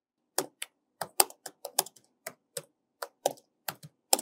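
Computer keyboard keys clicking as a sentence is typed, about fifteen separate, unevenly spaced keystrokes over a few seconds.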